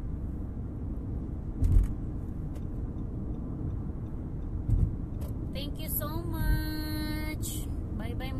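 Steady road and tyre rumble inside a car cruising on a highway, with two sharp low thumps about two and five seconds in. Near the end a voice rises and holds one note for about a second and a half.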